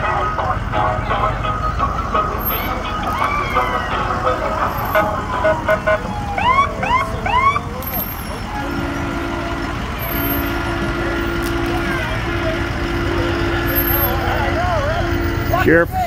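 Emergency vehicles in a slow parade, idling and rumbling past with voices around. About six seconds in there are three quick rising siren chirps. Through the second half a vehicle horn sounds a steady two-note tone in several long blasts.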